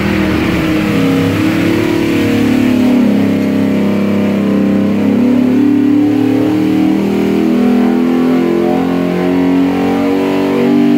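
A 363 cu in stroker small-block Ford V8 with a Holley Hi-Ram intake running loud on an engine dyno. Its engine speed rises and falls several times.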